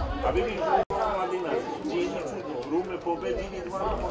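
Several people's voices talking and calling out at a football ground, unclear and overlapping. The sound drops out completely for an instant just under a second in.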